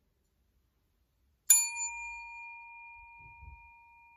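A small metal bell struck once about a second and a half in, then ringing on with two clear steady tones that slowly fade.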